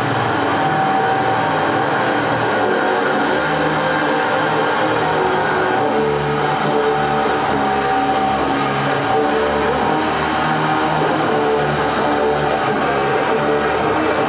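Loud live synthesizer music: a dense droning wall of sound, with low notes changing in steps every second or so under a steady higher held note.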